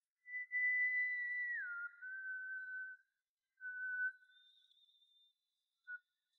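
A person whistling a melody, isolated from a song's vocal track. A high note is held for over a second and then slides down to a lower note that is held. A short repeat of the lower note follows, and a brief last note comes near the end.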